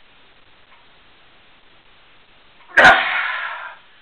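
Low room noise, then near the end a sudden loud, explosive burst of breath and voice that tails off over about a second: a man's straining grunt as he forces a steel bar into a bend by hand.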